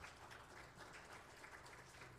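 Faint applause from a congregation: a dense spread of many small claps close together, heard from a distance.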